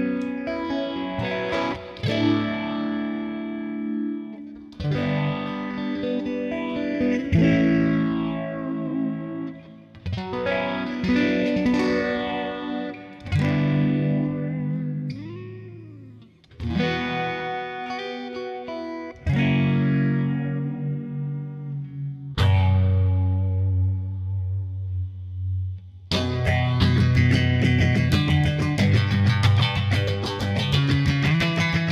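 Harley Benton Stratocaster-style electric guitar being played: chords and notes struck every two or three seconds and left to ring out. About fifteen seconds in, one note swoops up and back down in pitch. Near the end a low note is held, followed by fast, dense strumming.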